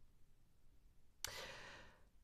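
Near silence, then about a second in, a woman's audible breath lasting most of a second.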